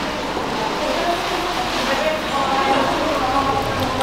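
Indistinct chatter of many people talking in a large, reverberant hall.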